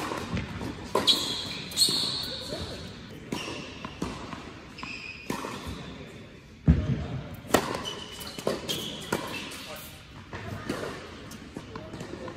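Tennis racket strikes and ball bounces on an indoor hard court, echoing in the hall. A loud serve hit comes at the very start, with more hits and bounces over the next couple of seconds. About halfway through, a loud close bounce comes from the server bouncing the ball before the next serve, followed by a few more bounces.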